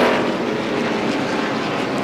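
NASCAR stock car's V8 engine running steadily, a pitched engine drone that holds an even level.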